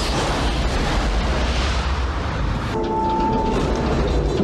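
Film sound effect of a spacecraft's oxygen tank exploding: a loud, sustained rumble with heavy deep bass and hiss. About three seconds in, a brief steady tone sounds over it.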